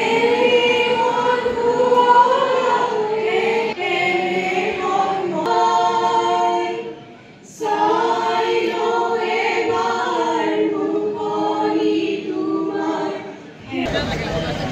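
A large group of people singing together in unison, slow and held notes. The singing breaks off briefly about seven seconds in and again near the end.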